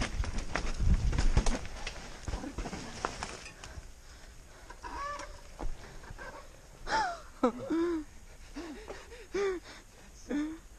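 Mountain bike rattling and thumping over a rough dirt trail for the first two or three seconds, then coming to a stop. Through the second half come several short, high-pitched vocal calls from the riders.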